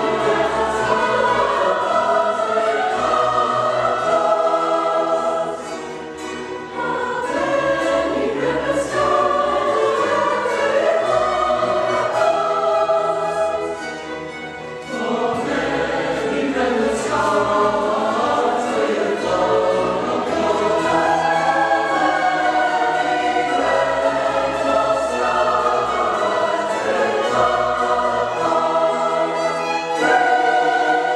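Mixed choir singing with string orchestra accompaniment, full and sustained, easing off briefly about six seconds in and again about halfway through between phrases.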